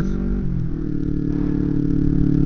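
Kawasaki Ninja 250R parallel-twin engine running as heard from the rider's helmet. Its pitch drops over the first half second, then holds steady.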